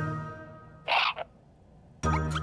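A musical note fading out, then about a second in a single short raspy puff of breath from the grumpy cartoon bunny.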